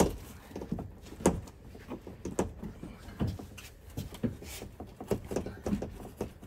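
Factory headliner panel of a Mercedes Sprinter van being wiggled backwards and worked loose overhead: irregular light knocks and clicks as the panel shifts against its plastic clips and the roof.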